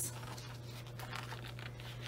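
Soft rustle of paper as a picture book's page is turned by hand.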